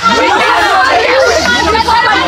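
Several voices speaking loudly at once, overlapping into a continuous babble with no single clear speaker.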